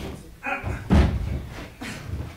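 A single loud slam on the stage about a second in, the loudest sound here, with a short pitched sound just before it.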